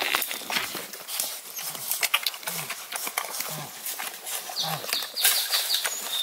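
Redbone Coonhound puppies nursing from their mother: a busy run of wet suckling clicks and shuffling in the bedding, with three short low grunts about a second apart and a quick run of high chirps near the end.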